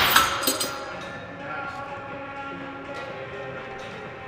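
Metal weight-stack plates of a cable machine clanking down at the end of a set: a couple of sharp clanks with brief ringing in the first half-second. After that there is only a quieter gym background with music.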